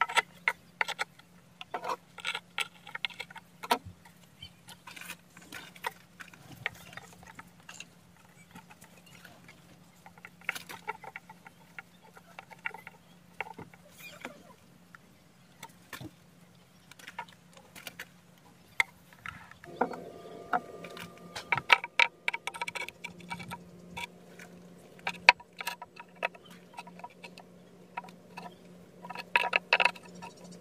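Chunks of porous volcanic rock being handled and set in place, clicking and knocking against each other and the stone slab in irregular light taps, over a faint steady low hum.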